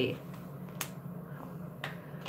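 Two sharp little clicks about a second apart, from small plastic makeup containers being handled, over a steady low hum.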